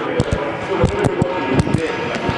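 Skipping rope in use on a gym floor: sharp taps of the rope and feet landing, often in quick pairs, a few times a second.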